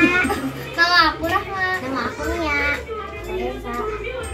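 Young girls' voices: several children chattering excitedly, with one voice rising high about a second in.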